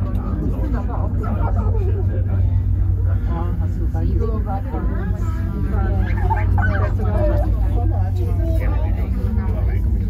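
Passengers talking indistinctly inside a moving cable car cabin, over a steady low rumble.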